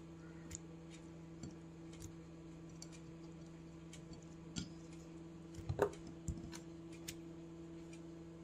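Faint, irregular ticks and soft taps from tomato slices being laid onto marinated mutton chops on a ceramic plate, over a steady low hum. A slightly louder clink rings briefly about six seconds in.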